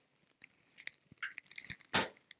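Light clicks and taps from a wooden bathroom vanity cabinet door being handled, with a louder knock near the end as the door shuts.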